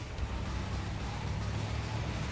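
Road traffic: a truck and cars driving along a highway, a steady low rumble with road hiss.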